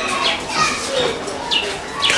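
Distant children's voices in the background, with short high calls and shouts.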